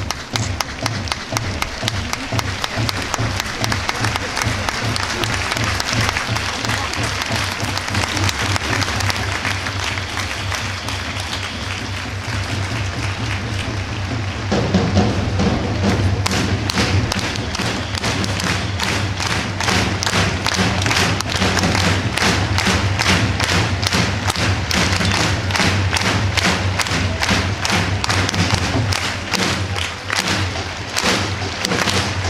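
Football supporters in the stands clapping in time to a big drum, a steady rhythmic beat. About halfway through, the beat gets louder and fuller.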